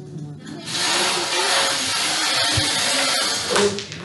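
Loud rustling hiss of fabric rubbing against a body-worn camera's microphone as the camera is handled. It starts about half a second in and stops just before the end, with voices murmuring underneath.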